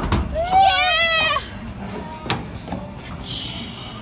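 A girl's high-pitched voice, gliding up and down in a wordless squeal or sung exclamation for about a second. A sharp click follows about two seconds in, then a short hiss.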